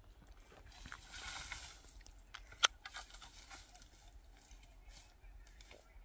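Cut branches and dry twigs rustling as they are gathered up by hand from leaf-strewn ground, with one sharp snap about two and a half seconds in.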